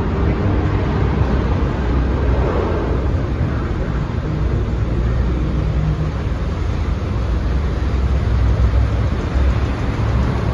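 Traffic rumbling steadily through a rock road tunnel: cars and a small truck idling and creeping past close by, their engine noise echoing off the rock walls.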